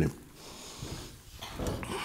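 A pause in speech: a man's voice trails off at the very start, then low room tone of a lecture hall with faint, indistinct low noise until he speaks again at the end.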